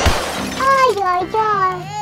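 A sudden crashing, shattering sound effect at the very start that dies away within about half a second, followed by a child's high voice rising and falling in pitch.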